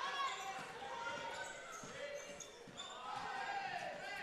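Court sound from an indoor basketball game: a basketball being dribbled on the hardwood floor, with short high squeaks and faint voices echoing in the hall.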